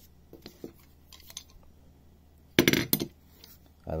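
An aluminium router-table corner jig being handled and set down on the router table plate: a few light clicks, then a short burst of metallic clattering about two and a half seconds in.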